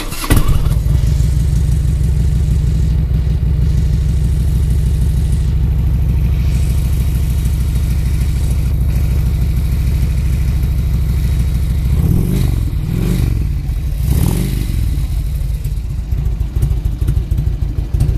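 A 2004 Harley-Davidson Road King Custom's carbureted Twin Cam 88 V-twin fires up through aftermarket true-dual exhaust pipes, with the carburetor jetted to suit them. It idles steadily, is blipped a few times about twelve seconds in, and settles back to idle.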